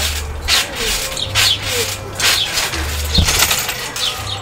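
A trampoline being bounced on, its springs squeaking with each bounce at a steady rhythm of about one a second. A heavier thump about three seconds in is a backflip attempt landing on the mat on hands and knees.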